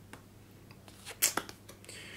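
A few light clicks and taps of cardboard game cards being picked up and set down on a tabletop, loudest as two sharp clicks in quick succession a little over a second in.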